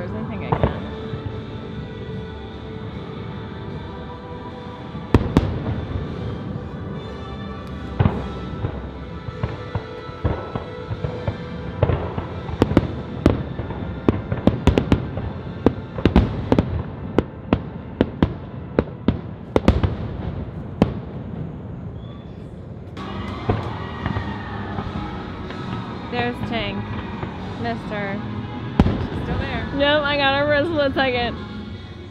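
Fireworks going off: scattered bangs that build into a rapid flurry about halfway through, over music playing throughout. A singing voice comes into the music near the end.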